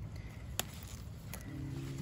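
Kale leaves being snapped off the stalk by hand: two short snaps, about three quarters of a second apart, over a low outdoor rumble, with a brief steady hum near the end.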